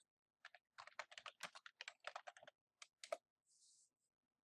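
Faint computer keyboard typing: a quick run of about a dozen keystrokes typing "google earth" into a search box, then two separate keystrokes about three seconds in, the last the loudest, followed by a brief soft hiss.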